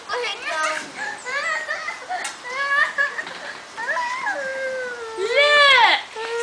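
A young child's high voice calling out and chattering, ending in a loud, drawn-out shout that rises and then falls in pitch.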